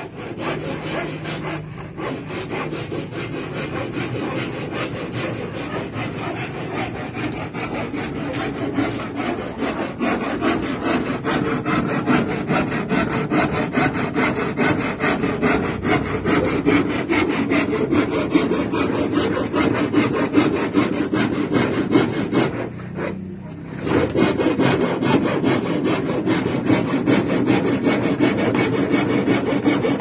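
A saw cutting through plywood, a continuous rasping that keeps going with only a short break about 23 seconds in.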